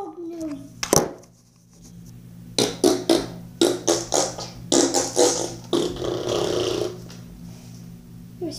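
Brown gingerbread slime being squeezed and worked by hand: a quick run of wet pops and crackles, about four or five a second, then a longer squelch near the end.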